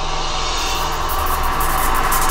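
Electronic music build-up: a sustained, jet-like noise sweep over a low drone. The sweep brightens about halfway through and grows slightly louder, rising into the next section of the drum and bass track.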